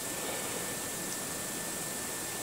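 Steady, even hiss with a faint constant high tone and no distinct events.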